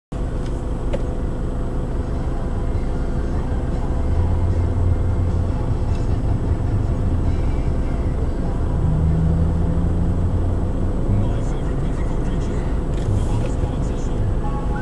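Steady low rumble of an idling engine and passing traffic heard from inside a stopped car's cabin, growing stronger about four seconds in.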